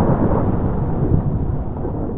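Thunder: the long rolling rumble after a clap, slowly fading as its higher end dies away first.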